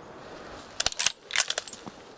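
A quick cluster of sharp metallic clicks and clinks, about a second long, with a brief high ring among them, like metal gear being handled.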